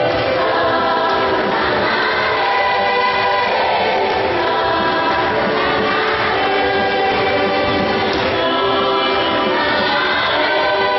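A large choir of many voices singing in long, held notes, with a steady level.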